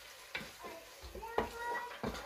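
Wooden spatula stirring chicken pieces in a nonstick frying pan, with a few knocks and scrapes against the pan and a light sizzle of the chicken frying.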